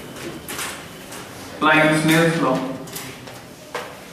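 Marker pen writing on a whiteboard: a few short scratchy strokes, with a brief spoken phrase about halfway through.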